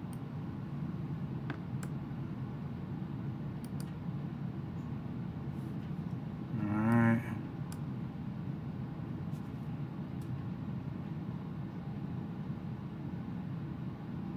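Steady low background hum, with a few faint scattered clicks like mouse clicks and a brief hummed voice sound about seven seconds in.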